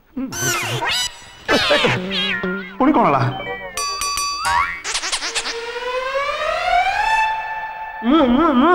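Comedy sound effects laid over the scene: a short run of stepped electronic tones, then one long pitched tone sliding steadily upward for about two and a half seconds, after a line of speech.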